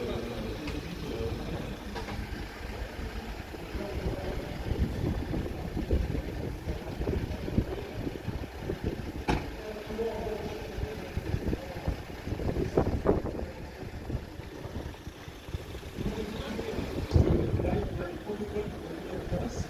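Outdoor street ambience: wind rumbling on the microphone over a running vehicle engine, with scattered voices and a few short knocks.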